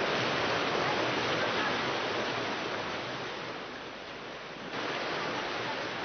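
Fast floodwater current rushing, a steady, even noise of moving water that changes abruptly in tone about three-quarters of the way through.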